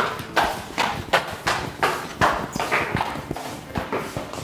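Footsteps on a hard floor: sharp, even steps at a quick steady pace of nearly three a second.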